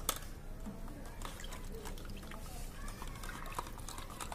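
Metal spoons stirring dish-wash solution in small cups: irregular light clicks and taps of spoon against cup, with faint liquid sloshing.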